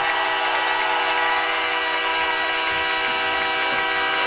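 A horn sounding one steady chord of several tones, held without a break.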